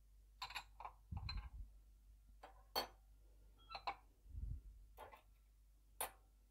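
Light clicks and clinks of a metal fork against a white ceramic salad bowl, about eight in all, the sharpest near three seconds in. Two dull low thumps come about a second in and again about four and a half seconds in.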